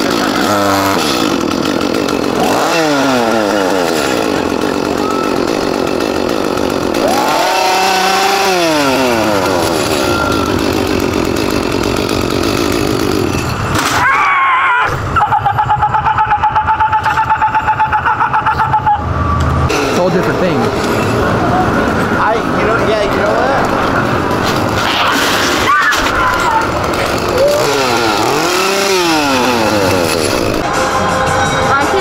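A chainsaw revving up and falling back several times, with a steadier stretch of running in the middle.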